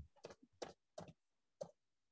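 A few faint, scattered computer keyboard keystrokes, single taps spaced irregularly.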